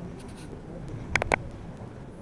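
Three quick sharp clicks with a slight ring, a little over a second in, over low room noise.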